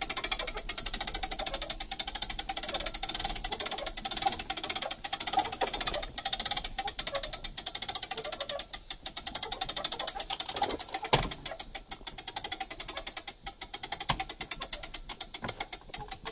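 Popup camper roof-lift crank being turned by hand, its gearing making rapid, steady clicking as the roof goes up, with one louder knock about two-thirds of the way through.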